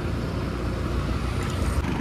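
Suzuki Access 125 scooter's single-cylinder engine running at a low steady cruise of about 25 km/h, heard as an even low rumble mixed with road and wind noise.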